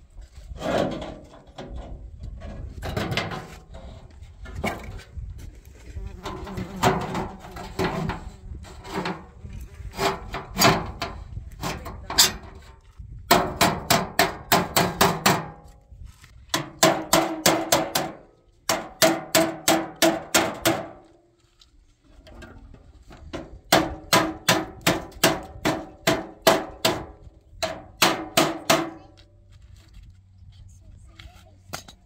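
Runs of rapid strikes on a stainless steel sink, about four a second, each with a short metallic ring, broken by brief pauses.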